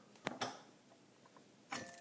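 Metal cover of a Brother Charger 651 sewing machine being handled and opened: two sharp clicks, then a louder metallic clack with a short ring near the end.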